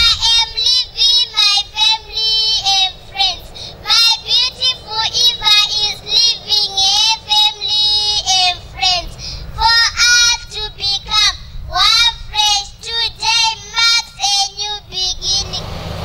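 A high voice singing a melodic line, with wavering notes that slide between pitches and short breaks between phrases, over a low steady rumble.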